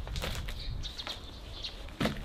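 Large cardboard box being handled and lowered onto a wooden deck: cardboard scraping and rustling with a few light knocks.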